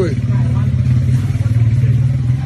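A steady, loud low engine-like drone runs without a break, with a brief voice at the very start.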